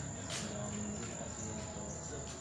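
Insects chirping outdoors in a steady, unbroken high-pitched trill, with a brief knock about a third of a second in.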